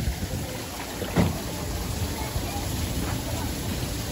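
Water streaming from several spouts and splashing into a shallow basin, with wind buffeting the microphone. One short knock or splash about a second in.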